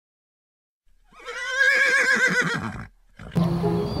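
A horse whinnying: one call lasting under two seconds, starting about a second in, with a fast quaver running through it.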